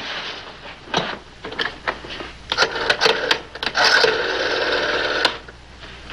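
Rotary desk telephone being used: the dial turned and spinning back with a quick run of about ten clicks, then a steady tone on the line for about a second and a half. This is the call to the long-distance operator.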